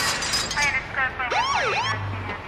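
Electronic siren sound effect in a DJ remix intro: a wailing tone that sweeps up and back down, twice in quick succession near the end, after a run of short stuttering tones around the middle.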